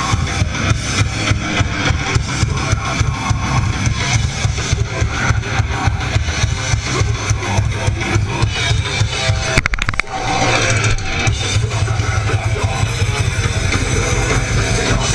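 A live rock band playing loud and fast, with rapid drum-kit hits and electric guitars. The music breaks off for a split second just before ten seconds in, then carries on.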